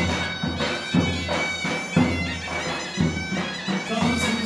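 Live wedding band music: a loud, reedy wind-instrument melody over a drum beat with a heavy low stroke about once a second.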